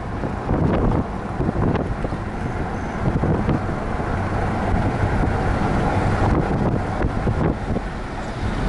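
A car driving along a road: steady low road and engine noise, with wind buffeting the microphone in gusts.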